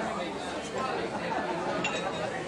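Indistinct background chatter of shoppers in a store, with a light click near the end.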